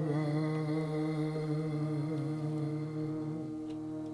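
Sikh kirtan: a man's voice holds one long sung note with a slight waver over a steady harmonium drone. The voice ends about three and a half seconds in, and the drone goes on.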